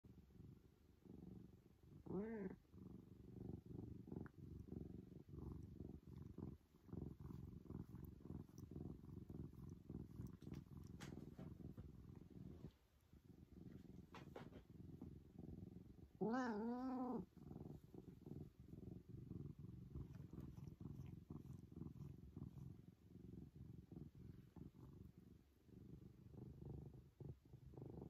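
A domestic tabby cat purring steadily and faintly while being stroked, with a short meow about two seconds in and a longer meow about sixteen seconds in.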